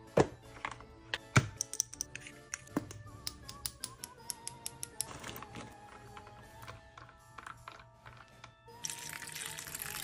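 Background music over a run of sharp clicks and taps on plastic ice trays, the two loudest in the first second and a half. Near the end, water pours into an ice tray.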